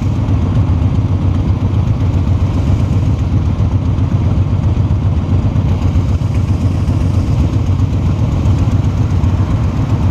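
Cruiser motorcycle engine idling steadily at a standstill, a constant low engine note with no revving.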